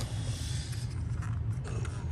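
Clear plastic cups and a plastic frag holder being handled, with light plastic rubbing and a few small clicks over a steady low hum.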